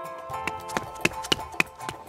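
Quick footsteps running on a hard floor, about three sharp steps a second, over soft background music.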